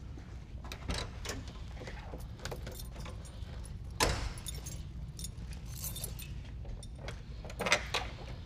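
A set of car keys jangling, with scattered clicks and one sharp click about halfway through, as the Honda Z600's rear hatch is unlocked. More clicks come near the end as the hatch latch releases and the hatch is lifted.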